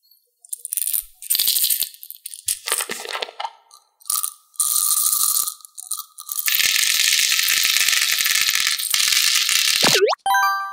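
Glass jar lid being twisted off with small clicks and crackles, then blue round beads poured out of the glass jar into a tray of beads, a dense continuous rattle and clatter lasting several seconds. A quick rising swoosh effect comes right at the end.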